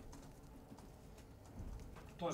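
Very quiet room tone in a pause between answers, with a faint low rumble near the end.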